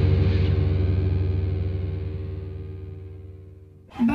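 A heavy metal band's distorted electric guitar chord ringing out and fading steadily, the final held chord of a song, cut off just before the end.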